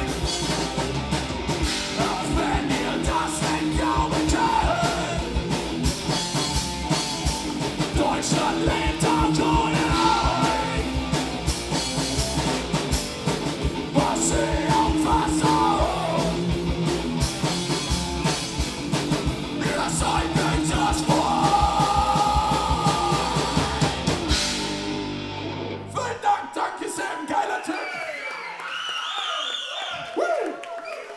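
Punk band playing live: shouted vocals over distorted electric guitar, bass guitar and a pounding drum kit. The song stops about 25 seconds in, the bass ringing on for a moment, then the crowd shouts and cheers.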